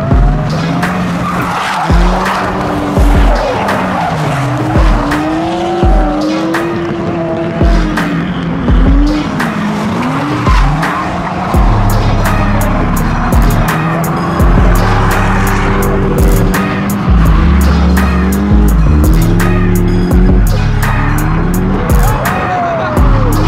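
Drift cars sliding in tandem: engines revving up and down and tyres squealing, over music with a steady beat.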